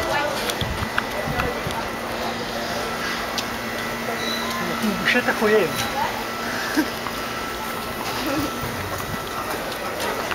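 Street ambience: voices of people talking in the background, with clicks and rustle from footsteps and a handheld camera on the move. A faint steady low hum runs through most of it.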